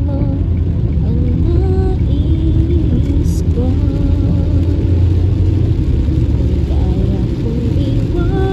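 Steady low road and engine rumble inside a moving car's cabin, with a song carrying a sung melody playing over it.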